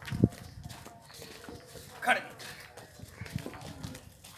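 Water buffalo's hooves stepping on a dirt yard as it is led on a rope, with a thump just after the start and a brief call about two seconds in.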